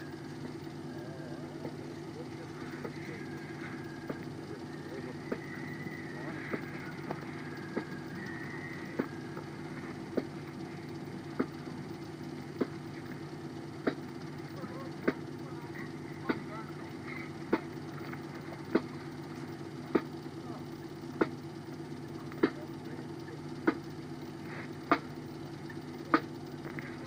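Lo-fi parade band under a steady low hum: faint high held notes of a tune in the first third, then a sharp regular beat about once every 1.2 seconds, growing louder towards the end.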